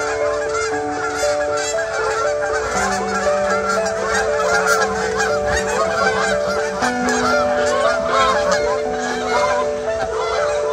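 A flock of geese honking continuously in flight, many calls overlapping, over soft background music of long held notes.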